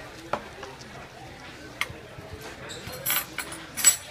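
Objects handled at a dining table: a few sharp single clicks, then two louder clattering bursts, one about three seconds in and the loudest just before the end, over a low murmur of diners.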